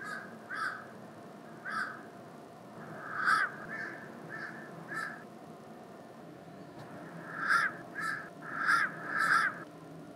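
Crows cawing: a run of short, harsh caws over the first five seconds, a pause of about two seconds, then four more caws in quick succession near the end.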